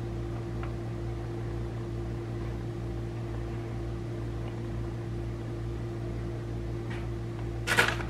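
A steady mechanical hum, like a running appliance or fan, holds one pitch throughout. A short rustling noise comes just before the end.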